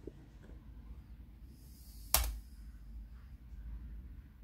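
Computer keyboard keystrokes: a few faint key taps, then one sharp, loud key press about two seconds in, as 'yes' is typed at a prompt and entered.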